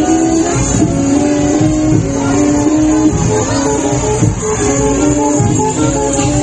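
Music: a plucked-string melody of held notes moving up and down, over low uneven beats.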